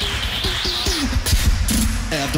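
Human beatboxing into a stage microphone: a deep, steady bass with kick-drum hits and sharp clicking snares, plus pitched sounds that slide downward, and a high wavering buzz in the first second.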